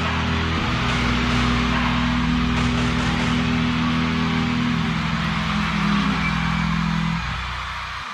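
Live band music ringing out: a held distorted guitar chord sustained under a dense noisy wash, fading away near the end.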